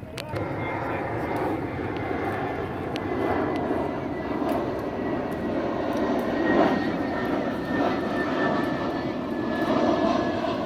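An aircraft flying over: a steady engine drone that swells in within the first second, with a thin high whine that drifts slowly lower in pitch.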